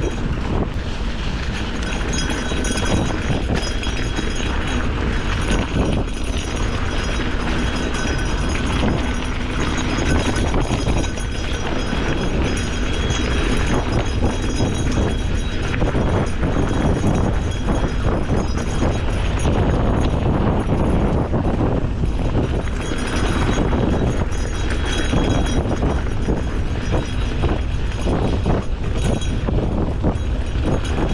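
Wind rushing over the microphone and a gravel bike's tyres rolling down a dirt singletrack, with frequent small rattles and knocks from the bike over bumps.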